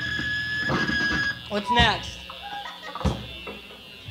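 A punk rock song ending on a live tape: the band's last notes and a high steady whine ring for about a second and die away. Then comes loose stage noise, with a short rising shout near the middle and a sharp knock later on.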